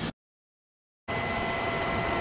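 The sound cuts out to dead silence for about a second, then a steady background hum with a few faint steady whining tones comes back in.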